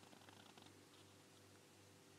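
Near silence: a faint, steady low hum of room tone, with a few faint ticks in the first half second.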